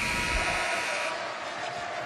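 A steady rushing noise with no speech, louder and hissier for about the first second, then settling to an even hiss.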